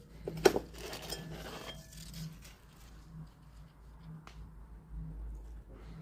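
Rustling and light knocks from a potted prayer plant (maranta) being handled and tilted, with a few sharp clicks in the first second and one more about four seconds in.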